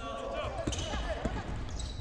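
Live basketball game sounds on a gym court: a ball bouncing on the hardwood floor, sneakers squeaking in short high chirps near the end, and faint voices of players.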